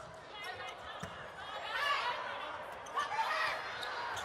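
Arena crowd voices, with a couple of sharp hits of a volleyball being struck in a serve and rally, about a second in and again near three seconds.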